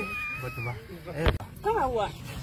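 A long, high, wavering meow-like cry that trails off under a second in, followed by a short click and a brief bit of speech.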